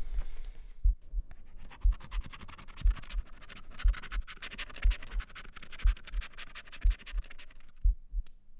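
A scratch card's foil coating being scratched off in a long run of quick strokes that starts about a second in and stops just before the end. Under it a low thump comes about once a second.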